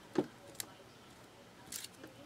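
Faint handling sounds from fingers pressing soft polymer clay cane pieces together on a work surface: a short soft sound just after the start, a small tick, and a brief high rustle near the end, with quiet room tone between.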